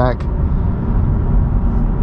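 Steady low rumble of road and tyre noise inside the cabin of a 2022 Honda Civic driving at speed.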